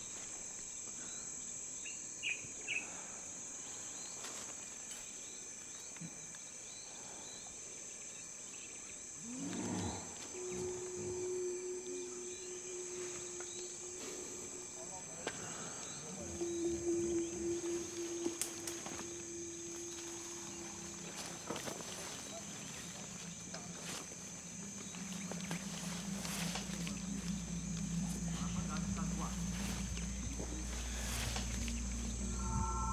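Forest ambience with a steady high insect drone. Two held low tones come midway, and a low drone swells in over the last several seconds.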